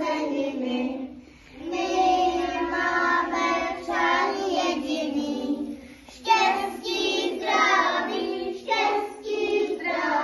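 A group of young kindergarten children singing a song together, in sung phrases with short breaks about a second and a half in and about six seconds in.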